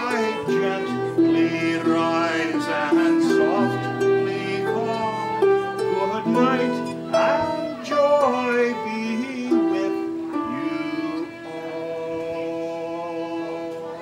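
A man singing a song with harp and fiddle accompaniment: a bowed fiddle holds long notes over plucked harp strings.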